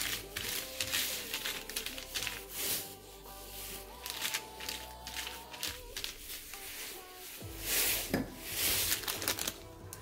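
Soft background music with the crinkling of a plastic bag and small clicks and rustles of hands handling it.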